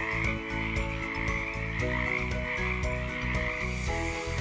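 A frog calling in one steady, unbroken stretch, over soft background music with held notes.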